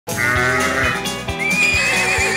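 Upbeat TV theme music that starts abruptly, with a steady drum beat about two beats a second. About a second and a half in, a wavering high horse whinny sound effect comes in over the music.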